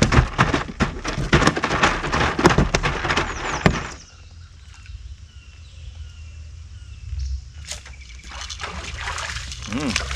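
Rapid crackling clicks and knocks for the first four seconds, then quieter with faint high chirps. Near the end comes splashing as a hooked bream thrashes at the surface while the rod is lifted.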